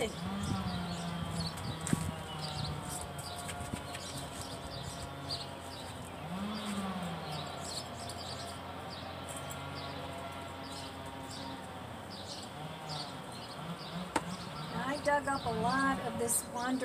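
Small engine of landscapers' power equipment running steadily, its pitch drifting slowly up and down, with a rise and fall about six seconds in. Light scraping ticks from a hand trowel working potting soil in a planter sound over it.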